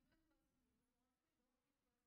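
Near silence: room tone in a pause between spoken sentences.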